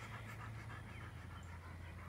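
A dog panting softly, over a steady low hum.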